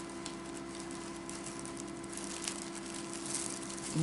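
Faint light clicks and rustles of a small plastic battery-powered light being turned and handled, over a steady low hum.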